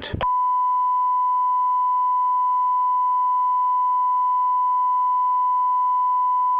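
Steady broadcast line-up tone, a single unwavering beep-like pitch that starts about a quarter second in and holds at constant level, the holding signal of a suspended broadcast feed.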